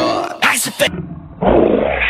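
Short vocal sounds, then a loud, rough roar that starts about one and a half seconds in and carries on.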